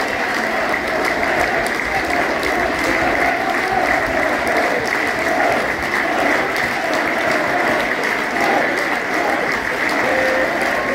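Football supporters in the stand applauding the players after the match: dense, steady clapping from many hands.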